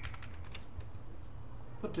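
Computer keyboard keys clicking as a password is typed: a few separate keystrokes in the first half, over a steady low hum.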